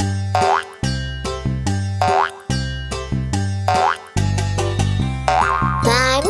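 Upbeat children's-song instrumental with a steady bass beat. A rising, springy boing effect repeats about every second and a half, four times.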